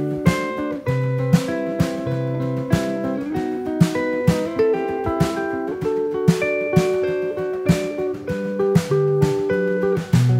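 Instrumental music: a Gibson electric guitar picking a melodic line of single notes and chords, with a snare drum played with a brush and soft sticks keeping a steady beat.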